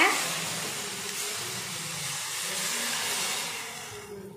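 Cooked mutton stock pouring into a hot steel kadai of fried masala and sizzling on contact: a steady hiss, loudest as the pour begins and settling lower after about a second.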